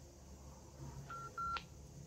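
Two keypad beeps from a Baofeng handheld radio, the second a little longer, then a click, as its keys are pressed to bring up the battery voltage reading.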